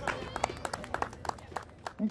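Scattered applause from a small audience: a few people clapping unevenly after the song ends.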